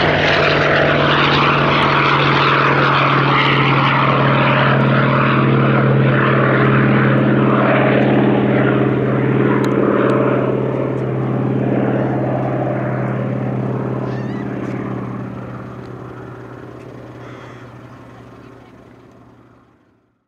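Hawker Fury II's Bristol Centaurus XVII sleeve-valve radial engine at take-off power as the aircraft climbs away, a steady drone with propeller noise that fades out over the last several seconds.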